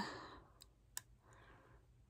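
Faint mouth sounds while fingers hold the cheek open to hook an orthodontic rubber band onto braces: a soft breath and a single sharp click about a second in.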